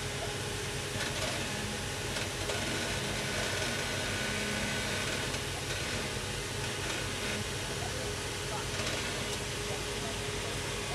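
Land Rover Discovery's engine running at low revs as it crawls slowly down a steep slickrock face, under steady wind noise on the microphone.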